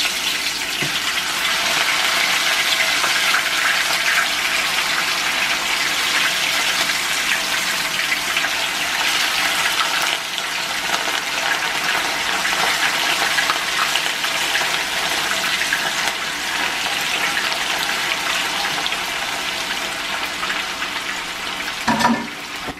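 Rohu fish steaks shallow-frying in hot oil in a non-stick pan, with a steady, dense sizzle and crackle throughout as more pieces go in one by one.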